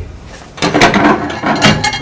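A plate clattering against the glass turntable inside a microwave oven as it is lifted out, a run of sharp rattles starting about half a second in.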